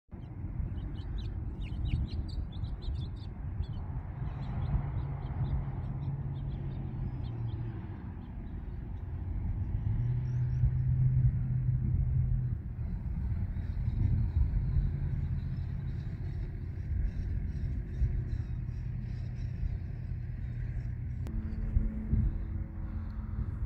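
Steady low outdoor rumble of distant vehicle engines, with a low hum that swells and fades several times. Small birds chirp briefly in the first few seconds. Near the end the sound changes abruptly to a different, higher steady hum.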